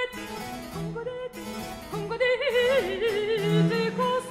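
French Baroque petit motet: a high treble voice singing with vibrato over harpsichord and bass-viol continuo, with sustained low bass notes beneath.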